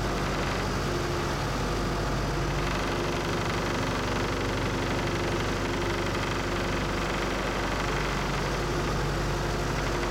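Glass-bottom tour boat's engine running steadily under way, a constant hum beneath a rush of noise from the churning wake and the wind.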